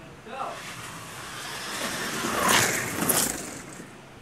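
1/25 scale slot cars' electric motors whining as they race down the drag strip toward the track end. The sound builds steadily, peaks about two and a half to three seconds in with the pitch falling as the cars pass, then dies away.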